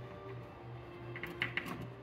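Light clicks and taps of fingers spinning small screws out of the back of an MSA Altair 5X gas detector's housing, with a few clicks bunched about a second and a half in, over a steady low hum.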